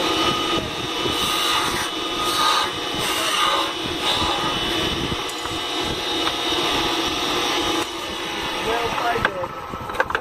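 Wood lathe running with a steady motor whine. A hand-held turning tool scrapes and cuts the spinning wooden quail-call blank in short passes, mostly in the first few seconds.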